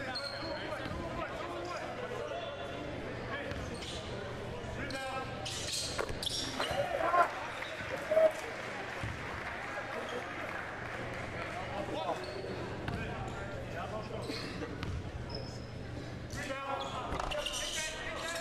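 Basketball bouncing on a hardwood gym floor during a free-throw routine, a few separate knocks, over a steady murmur of crowd voices in a large gym.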